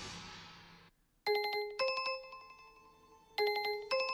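A phone ringtone: an electronic two-note ring, a lower note then a higher one, heard twice about two seconds apart. A soft hiss fades out just before the first ring.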